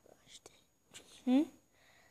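A person's voice: a short "hmm" about a second in, with soft breathy sounds before it.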